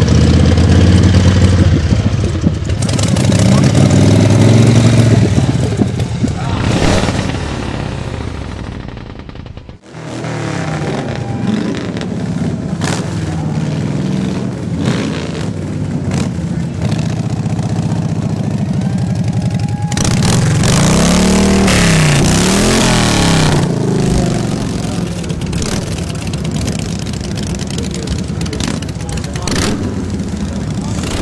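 Motorcycle engines running, with a sudden break about a third of the way in. About two-thirds of the way in, an engine revs up and down a few times in quick succession.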